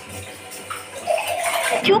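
Water running from a kitchen tap into a sink as hands wash something under it. About a second in, a voice comes in over the running water.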